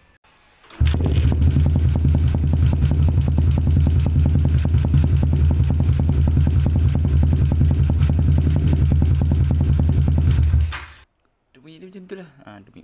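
Yamaha LC135 single-cylinder four-stroke engine running steadily at idle through an Espada aftermarket exhaust with a fibre-packed silencer: an even, low exhaust note, a little loud. It starts suddenly about a second in and cuts off abruptly near the end.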